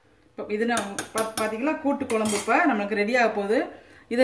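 A steel spoon stirs a thick lentil-and-greens kootu in an aluminium pressure-cooker pot, clinking and scraping against the metal several times. A voice carries on over the stirring through most of this stretch.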